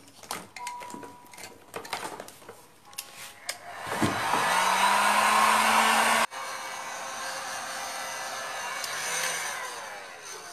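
A hand-held dryer blowing on wet acrylic paint to dry it. A few handling clicks come first. About four seconds in it switches on, its motor whine rising as it spins up, and it blows loudly for about two seconds. It then drops abruptly to a quieter steady blow until near the end.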